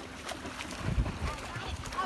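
Swimming-pool water splashing and sloshing with distant voices, and wind rumbling on the microphone, strongest about a second in.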